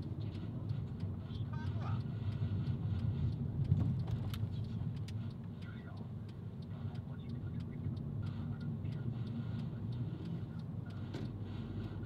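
Car driving: a steady low rumble of engine and tyre noise on the road, with scattered light clicks.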